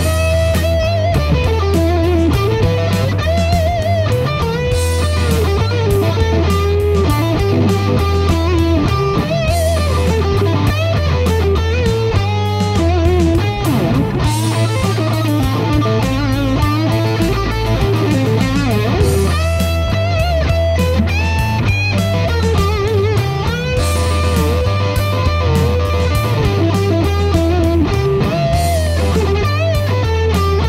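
Electric guitar playing a bluesy rock lead solo built on E minor pentatonic licks, with string bends and vibrato. It is played over a backing track of bass and drums.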